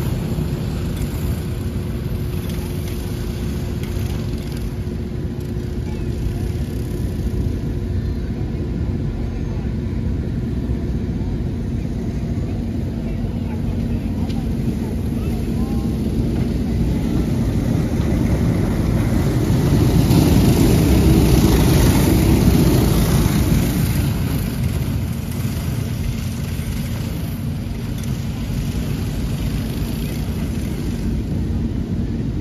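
A pack of box stock racing go-karts with Predator 212-type single-cylinder four-stroke engines running hard around a dirt oval. Their engines blend into a steady drone that swells as the pack comes close, about twenty seconds in, then fades again.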